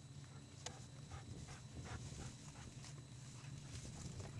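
Weimaraner sniffing with its nose in leafy weeds: short quick bursts of sniffing and rustling, several a second, faint over a steady low hum.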